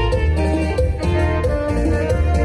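Live chilena from a keyboard-led band: a bright melody over a steady bass line and a regular drum beat.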